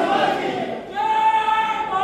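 A group of voices chanting a slogan in unison, drawn-out calls, with a new call starting about a second in.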